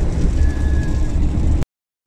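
Steady low rumble of road and engine noise inside a Hyundai car's cabin on a wet highway, with a faint thin tone about half a second in. The sound then cuts out to dead silence for a moment near the end.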